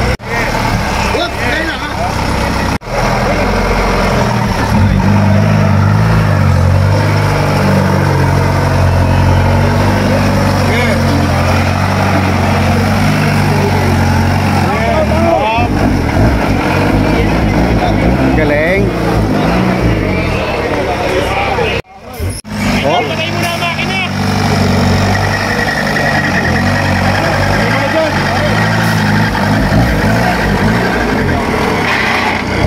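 Off-road competition buggy's engine running under load, its pitch rising and falling as the throttle is worked in the mud, with people's voices over it. The sound drops out briefly twice, at about three seconds and about twenty-two seconds in.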